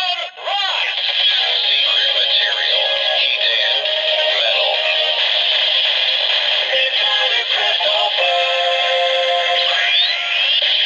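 DX Zero-One Driver toy belt playing the Metalcluster Hopper henshin (transformation) sound through its small speaker: electronic music with a synthesized voice, thin and tinny with no bass. The key was inserted with the driver closed, so the belt skips the standby noise and goes straight into the henshin sound.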